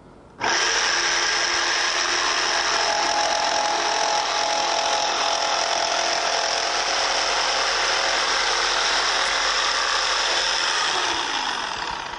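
Corded electric jigsaw switched on suddenly and cutting through a wooden board, its reciprocating blade running steadily. Near the end it winds down, falling in pitch, as it finishes the cut and the trigger is released.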